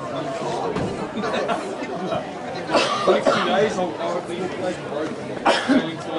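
Indistinct chatter of people talking near the microphone, overlapping, with a couple of sharper, louder bursts about three seconds in and near the end.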